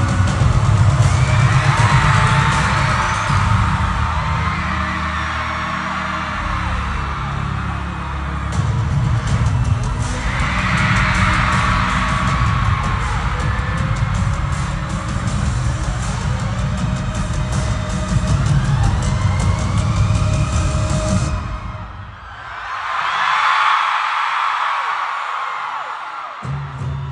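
Loud pop music with a heavy bass line and a steady beat, played through an arena PA, with a large crowd screaming over it. About 21 seconds in the music cuts out and the crowd's screaming swells on its own. The bass comes back right at the end.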